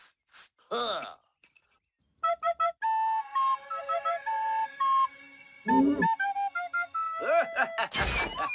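A snake charmer's pipe (pungi) playing a wandering melody of short, stepping notes, starting about two seconds in. It is broken by short cartoon vocal grunts, the loudest around six seconds.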